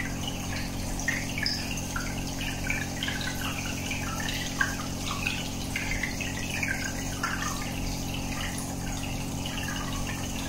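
Aquarium aeration bubbling: a stream of air bubbles rising and breaking at the water surface, giving a continuous, irregular bubbling and trickling. Under it runs a steady low hum from the tank's pump.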